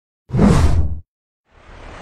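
A whoosh transition sound effect, loud and lasting under a second, followed near the end by a fainter rising swish.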